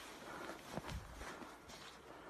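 Faint, soft footfalls in snow, a few low thumps in the middle, as a team of huskies pulls a sled.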